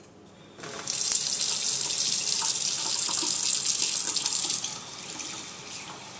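A kitchen faucet running water, likely into a measuring cup for the batter's cup of water. It comes on under a second in and runs full for about four seconds, then drops to a quieter flow near the end.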